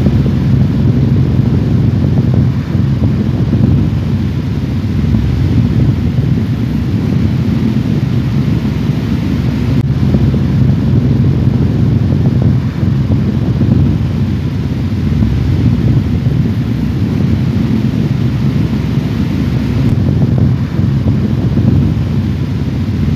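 A loud, steady low rumble with a wind-like hiss over it, unchanging throughout.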